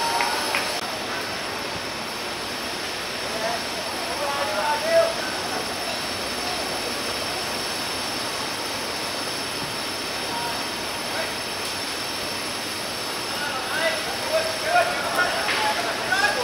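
Players shouting across an open football pitch, a few short calls about four to five seconds in and a run of them near the end, over a steady outdoor hiss.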